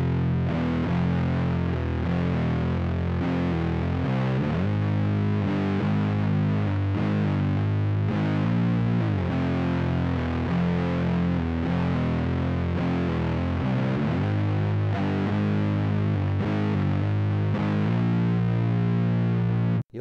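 Heavily distorted electric guitar tuned down to C standard, playing a slow doom-metal riff in F minor built on the harmonic minor scale. The notes are accented and an open string is struck between them. The playing stops suddenly near the end.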